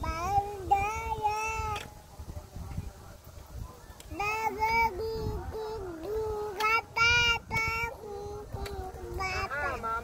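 A toddler girl singing a made-up song in short, high-pitched phrases with pauses between them, over a low rumble.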